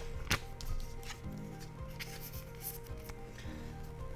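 Trading cards being handled and laid down on a playmat: a sharp tap about a third of a second in, then light taps and scrapes of cards sliding against each other, over quiet background music.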